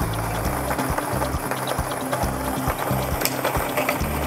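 Plastic lottery balls tumbling and clattering in the mixing chamber of a lottery draw machine, a steady rushing sound with small clicks, over background music with a low stepping bassline.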